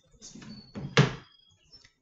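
A single sharp thump about halfway through, after a softer rustle.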